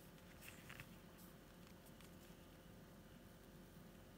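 Near silence: room tone with a faint steady hum, and a few faint soft ticks in the first second or so.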